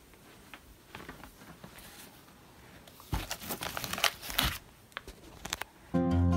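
Rustling and crinkling handling noises as a tape-edged wood disc is carried and set down on plastic sheeting, faint at first and busiest a little after halfway.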